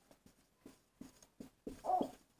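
Marker writing on a whiteboard: a few faint strokes, then a short high squeak near the end.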